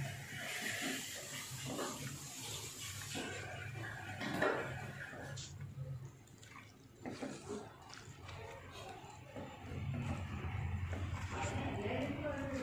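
A bare hand mixing raw fish pieces into a moist grated-coconut masala in a clay pot: irregular soft squishing and rustling of the wet mixture.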